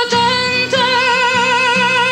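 A woman singing over a strummed acoustic guitar. About two-thirds of a second in, her voice settles onto a long held note with vibrato while the guitar strums keep an even rhythm beneath.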